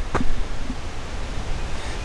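Wind on the camera microphone: a steady low rumble and hiss, with a short click just after the start.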